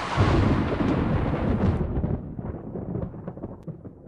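A deep, thunder-like rumbling noise that fades steadily away. The hiss above it drops out about two seconds in.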